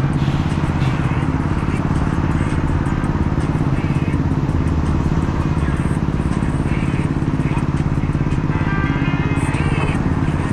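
A motor vehicle engine idling close by, a steady low rumble with an even fast pulse, amid city street traffic. A brief higher-pitched sound rises over it near the end.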